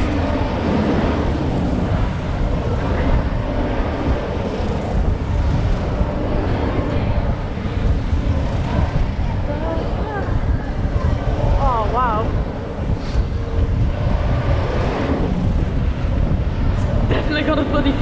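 Wind rushing over a rider-held camera's microphone on a spinning fairground ride, a steady loud rush with deep rumble. A brief wavering voice-like sound rises out of it about ten and twelve seconds in.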